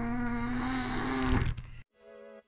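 A single held note with many overtones, steady in pitch. It wavers briefly, then fades out about a second and a half in.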